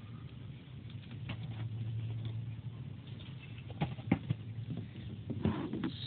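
Faint handling noise: a few light clicks and knocks in the second half as hands take hold of a glass ink bottle and its cap, over a low steady hum.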